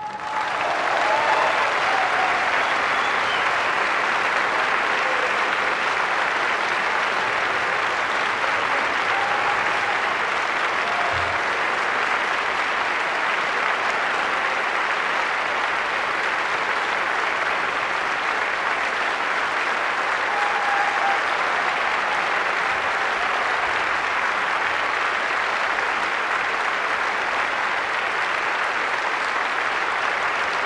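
Audience applause in a concert hall, breaking out straight after the orchestra's final chord and going on steadily as a dense, even clapping.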